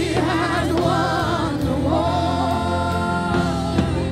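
Gospel worship song sung by female vocalists over a sustained instrumental accompaniment, with one long held note in the middle.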